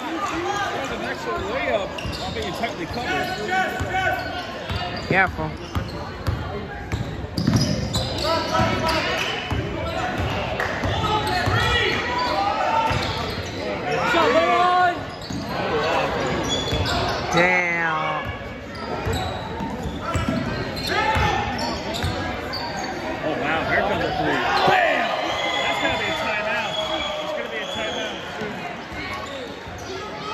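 Basketball dribbled and bouncing on a hardwood gym floor during play, under a constant hubbub of spectators' voices in a large hall.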